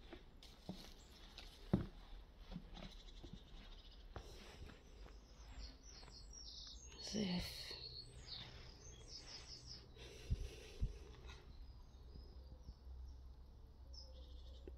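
Faint outdoor ambience: small birds chirping in short repeated high notes, mostly in the middle stretch, over scattered footsteps and crunches on rubble and broken brick.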